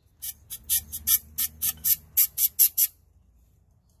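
Can of compressed air sprayed through its straw in about a dozen short hissing puffs, four or five a second, stopping about three seconds in, blowing particles out of an outboard trim ram's bolt sockets.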